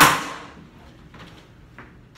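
One sharp smack of a kodan storyteller's hariōgi (paper-wrapped fan) on the wooden lectern, closing the rapid recitation. It rings and dies away within about half a second, then a few faint taps follow.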